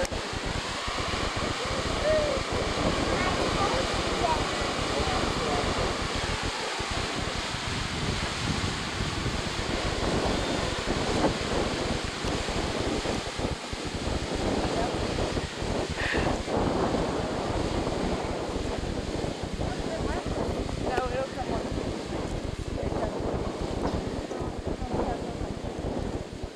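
Cascade Geyser erupting: a steady rush of water and steam, with wind buffeting the microphone, dying down near the end.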